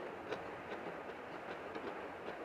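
Fingers mixing rice and curry on a plate, with a few soft irregular clicks over a steady background hiss.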